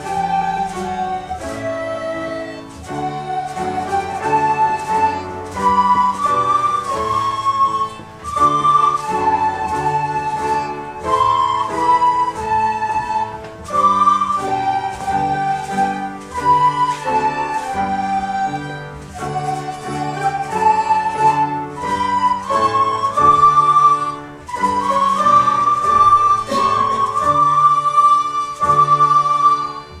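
A children's recorder ensemble playing a melody in phrases over lower held parts, with short breaks between phrases about eight seconds in and again near 24 seconds.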